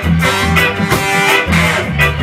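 Live ska band playing: a held horn line over a bouncing upright bass, drums and Hammond organ.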